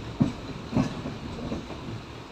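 Passenger train running, wheels clacking over rail joints against a steady rumble: two loud knocks a little over half a second apart, then several lighter ones.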